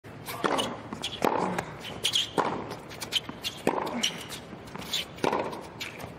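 Tennis rally on a hard court: a string of sharp racket strikes and ball bounces, a strong hit a little more than once a second, with the players' footsteps on the court.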